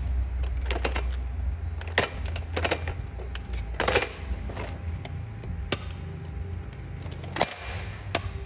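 Stanley folding hand truck being folded up by hand: irregular clicks, snaps and knocks from its plastic platform, steel handle frame and wheel brackets, with a louder knock about four seconds in, over a low steady hum.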